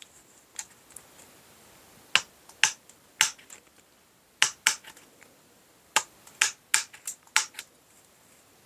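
Metal tin snips cutting through the wires of welded steel mesh one at a time: about a dozen sharp snaps, irregularly spaced and coming faster in the last two seconds.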